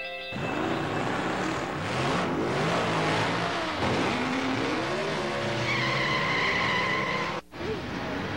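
Racing car sound effects: engines revving and passing with rising and falling pitch, then a high tire squeal held for about a second near the end, cut off abruptly.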